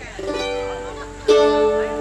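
Strummed chords on a small acoustic string instrument: a softer chord just after the start, then a louder one about a second in that rings on.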